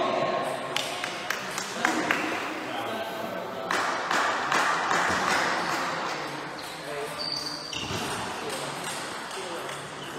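Table tennis ball clicking: a few sharp knocks in the first two seconds, then the quick knocks of bat and table during a rally, over background voices.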